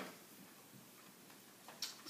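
Near silence: room tone in a meeting room, with a faint sharp click near the end.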